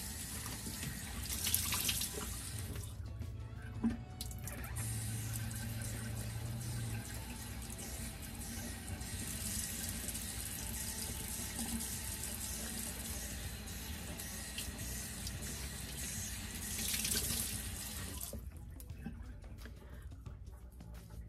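Water running from a tap into a sink, with louder splashing surges about a second or two in and again near the end, as a washcloth is rinsed; the running water stops shortly before the end.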